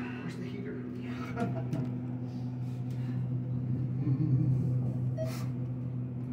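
ThyssenKrupp traction elevator car riding between floors, giving a steady low hum made of a few fixed tones.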